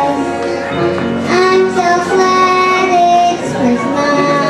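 A young girl singing a Christmas song into a microphone, holding long notes that step from pitch to pitch.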